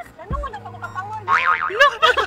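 Laughter and a short spoken line over soft background music.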